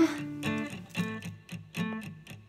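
Music: a plucked and strummed guitar pattern repeating in a steady rhythm.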